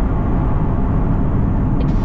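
Steady low rumble of road and engine noise inside the cabin of a 2019 Aston Martin DB11 V8 cruising on a country road.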